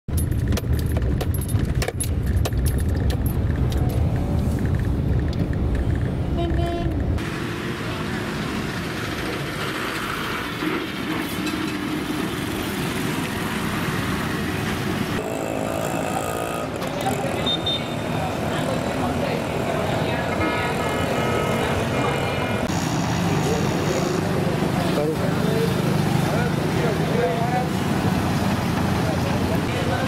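Street traffic, mostly motorbikes and auto-rickshaws, with people's voices mixed in. A heavy low rumble fills the first seven seconds, and the traffic sounds lighter after it.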